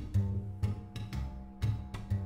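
Background music: a low bass note struck about twice a second under held higher tones.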